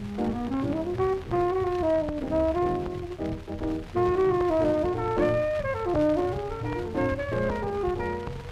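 Early-1950s small-group jazz played back from a 12-inch 78 RPM acetate disc. Horns play a melody line together in harmony, several lines rising and falling side by side.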